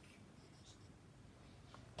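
Near silence: room tone, with faint rustling of a hand-drawn paper scroll as a hand rests on and shifts it.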